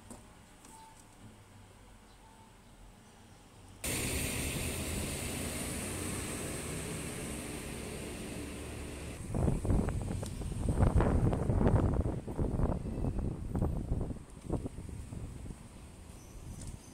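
Outdoor street ambience: a steady hiss of traffic-like noise that starts abruptly, then loud, uneven low rumbling for about five seconds, like wind on the microphone or a vehicle passing close by.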